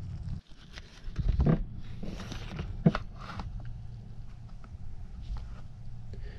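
Low rumbling noise on the camera microphone, with scattered light clicks and brief rustles of handling.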